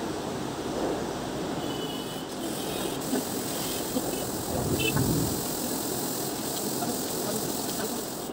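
Tap water running steadily into a wash basin while a child's mouth and face are rinsed, with a dull bump about five seconds in.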